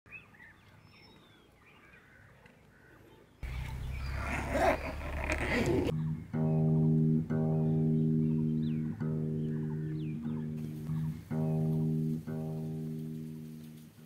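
Acoustic guitar chords struck one at a time and left to ring, roughly one a second, after a few seconds of loud rushing noise. Faint bird calls at the start.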